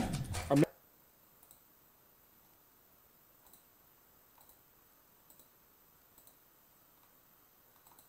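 A short burst of a voice from a video ad, cut off suddenly within the first second, then faint computer mouse clicks, about one every second, as menu options are clicked.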